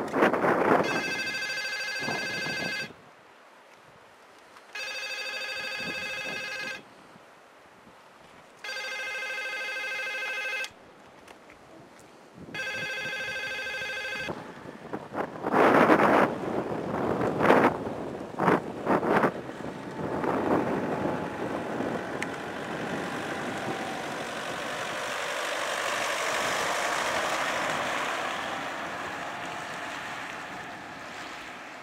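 A telephone ringing: four rings, each about two seconds long with two-second silences between them. Then gusts of wind buffet the microphone, loudest a few seconds after the last ring, settling into a steady wind rush.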